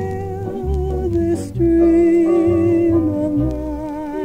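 Mid-century vocal jazz playing from a vinyl LP: long held melody notes with a slow vibrato, hummed or wordless, over plucked bass notes.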